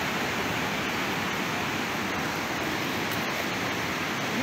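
Steady rush of a swollen, fast-flowing flooded river, an even unbroken roar of water.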